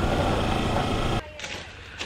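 Kawasaki Versys X300's parallel-twin engine running as the motorcycle rides a dirt trail, heard with wind and trail noise on the bike-mounted camera; it cuts off suddenly just over a second in, leaving quiet outdoor ambience.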